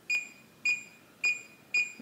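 Reliabilt electronic deadbolt keypad beeping four times, a short high beep about every half second as each key is pressed, while the default programming code 0000 is entered.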